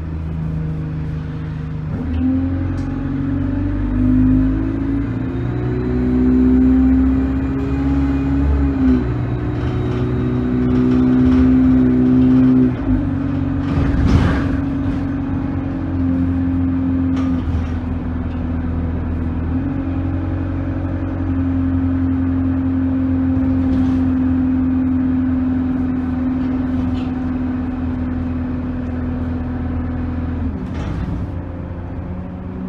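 Bus engine and gearbox heard from inside the passenger saloon while the bus drives: the engine note climbs and drops back at several gear changes. A single sharp knock comes about halfway through.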